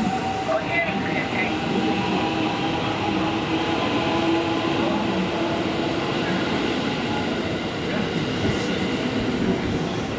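Electric commuter train moving past a station platform: the rumble of the cars on the rails with a steady motor hum that grows a little stronger in the middle.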